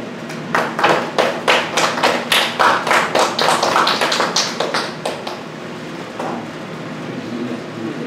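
A small audience clapping briefly: a few people's claps, about four a second, which stop after about five seconds.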